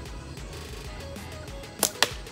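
A slingshot fired once near the end: a single sharp snap as the rubber bands and pouch release an 8 mm steel ball. Background music plays throughout.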